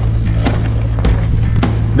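Music over a mountain bike rolling down a rocky trail, its tyres and frame giving a steady run of sharp knocks and clatters on the stones.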